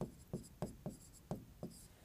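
Marker pen writing on a board: a faint run of about seven short, quick strokes as a couple of words are handwritten.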